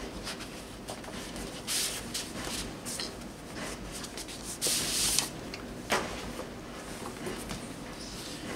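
Paper and card rustling and scraping as a print is slid out of a black card envelope, with two louder swishes about two and five seconds in and a light knock about six seconds in.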